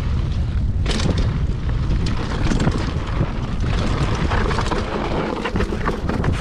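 Giant Trance 2 mountain bike rolling fast down a rough dirt trail: a steady rumble of tyres and wind buffeting the camera microphone, with frequent rattles and knocks from the bike over rocks and roots. The sharpest knock comes about a second in.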